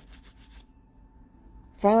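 A pause in a woman's speech, filled only by a faint low background rumble with a little light rubbing noise in the first half. Her voice comes back right at the end.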